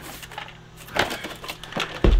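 Cardboard box and packaging being handled: a few short knocks and rustles, the loudest about a second in.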